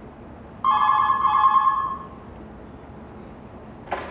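Mobile phone text-message alert: one steady electronic tone with bright overtones, a little over a second long. A short click follows near the end.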